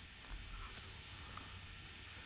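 Faint outdoor background: a steady high-pitched insect drone over a low rumble.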